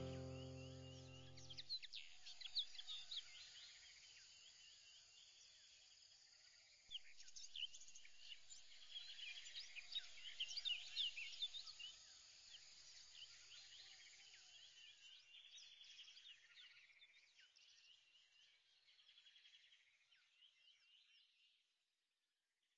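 Background music ends about two seconds in. Faint birdsong follows, many short chirps and trills, busiest a third of the way through, then thinning and fading out just before the end.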